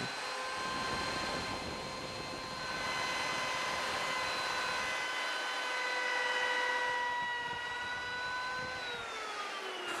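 Router with a 45-degree chamfer bit cutting a chamfer along the edges of a slot in Baltic birch plywood: a steady high motor whine over the rasp of the cut. Near the end the pitch falls as the motor winds down.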